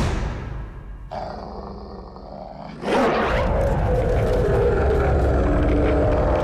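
Cartoon dog's supercharged bark sound effect: after a quieter, tense stretch, a loud sudden bark-roar about three seconds in that carries on as a sustained rushing blast, the sound of the bark turned into a shockwave.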